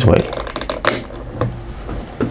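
A few sharp plastic clicks from a DT9205A digital multimeter's rotary range selector being turned through its detents to the 200 µF capacitance range, the loudest a little under a second in.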